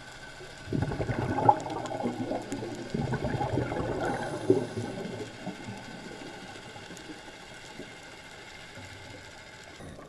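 Scuba diver's exhaled breath bubbling out of a regulator underwater: a rush of bubbles lasting about four seconds, then a steady low hiss.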